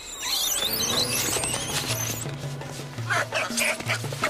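Hanuman langurs screaming in high, wavering squeals during a fight, as mothers try to fend off an attacking male. The squeals fill the first two seconds and break out again, lower, about three seconds in, over background music with held bass notes.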